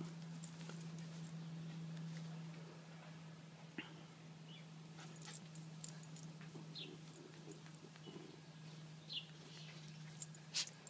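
Faint sounds of a small dog leaping at a hanging rope toy: a few short, high whines and light clicks, over a steady low hum.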